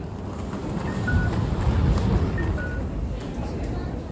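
Busy street crossing: low traffic and crowd rumble, with a Japanese pedestrian crossing signal giving its two-note descending 'cuckoo' tone twice, about a second and a half apart, a sign that the walk light is on.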